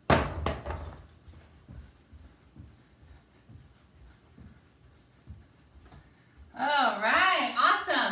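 A loud clatter of a few sharp knocks, then soft thumps of feet landing jumping jacks on a rug-covered wooden floor, about two a second. Near the end a woman's voice comes in, sliding up and down in pitch.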